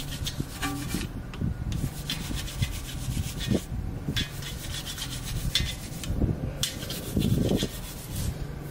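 Wheel brush scrubbing a soapy alloy wheel between its spokes, in repeated scratchy strokes broken by a few short pauses, over a faint low steady hum.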